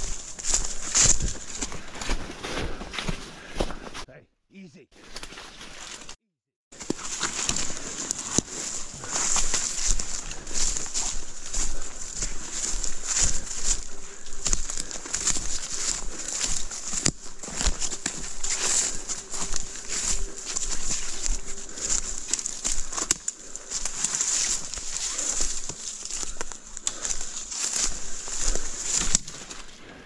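Footsteps crunching through dry leaf litter and brushing through woodland undergrowth, over a steady high-pitched hiss. The sound drops out briefly twice near the start.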